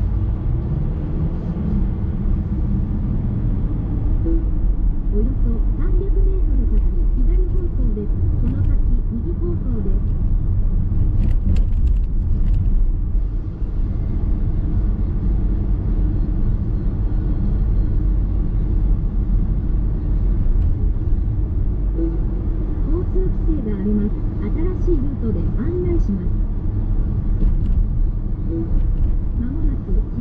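In-cabin driving sound of a car moving through city streets: a steady low rumble of tyres, road and drivetrain. At times there are faint, muffled voice-like sounds.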